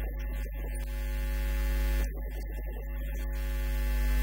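Loud, steady electrical mains hum with a stack of overtones, running under a man's voice that talks in short stretches.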